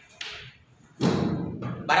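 Chalk strokes scraping and tapping on a blackboard, then a single thud about a second in.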